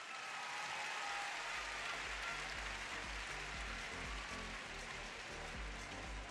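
Classical music accompanying a rhythmic gymnastics clubs routine, with a steady low beat coming in about a second and a half in, under a constant noisy wash.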